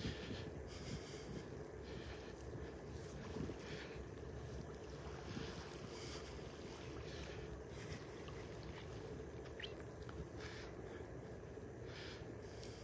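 Faint outdoor ambience: light wind on the microphone over calm water, with a faint steady hum underneath.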